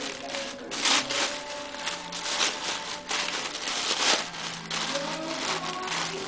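Wrapping paper being torn and crumpled by hand, in a run of irregular rustling and ripping bursts as a present is unwrapped.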